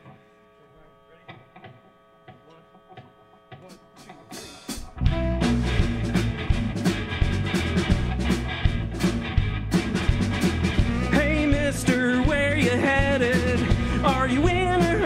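Live rock band: a few seconds of faint held tones and soft clicks, then drums, bass and electric guitars come in loud and together about five seconds in. A wavering lead melody joins the band near the end.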